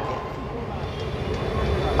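A low, steady background rumble with a faint steady hum, heard in a pause in a man's amplified speech.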